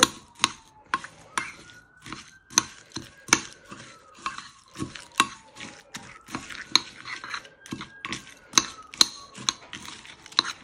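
A metal spoon stirring thick Greek yogurt into granola in a ceramic bowl, knocking and scraping against the bowl in irregular sharp clinks, two or three a second.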